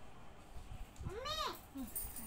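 A single meow, rising then falling in pitch, about a second in, voiced by a person imitating a cat, followed by a short low voice sound near the end.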